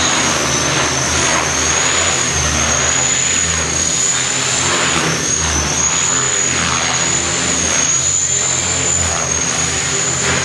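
Align T-Rex 500 electric RC helicopter in flight: a steady high whine from its brushless motor and drive gears, wavering slightly in pitch as the pilot works the controls, over the low hum of the main rotor blades.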